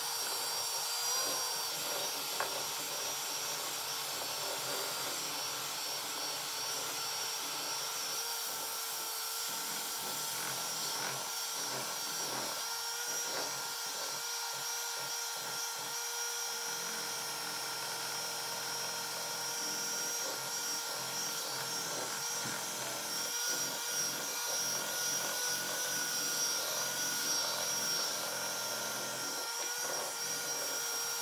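Electric hand mixer running on high, its beaters whipping chocolate frosting in a glass bowl: a steady motor whine at one even pitch.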